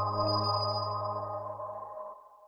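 Intro music's closing chord, held and fading out steadily, with a strong low note under it.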